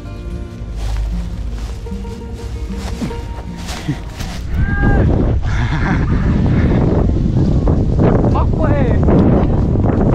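Flutes on a Vietnamese flute kite (diều sáo) sounding steady held tones. About five seconds in, a louder rush of wind on the microphone sets in, with a few brief swooping whistles over it.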